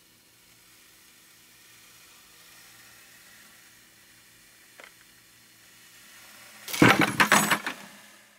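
A low steady hum, then about seven seconds in a balsa-wood mini-tower snaps and collapses under its hanging load, with a loud burst of cracks and metallic clatter from the chain and loading block lasting about a second. The tower fails by all its legs buckling together as the whole structure twists, its unangled cross members giving no resistance to the rotation.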